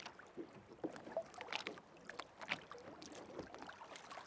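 Faint water lapping against the hull of a small open boat on the sea, with small irregular splashes.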